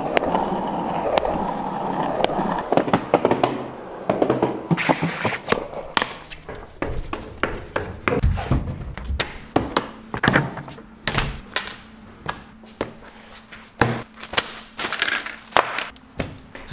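Small plastic cruiser skateboard rolling on asphalt, a steady wheel rumble for the first few seconds. It is followed by a long string of sharp clicks, knocks and thuds from things being handled and moved.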